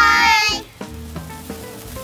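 Children's shouted greeting trailing off about half a second in, then a lit handheld sparkler fizzing and crackling, with quiet background music under it.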